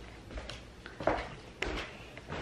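A few soft clicks and knocks of a door handle and latch being worked slowly to open the entrance door gently.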